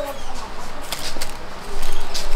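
Hands handling a gift basket and its plastic-packaged items: light rustling with a few sharp clicks about a second in.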